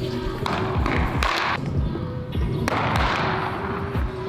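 Background music with a steady thumping beat.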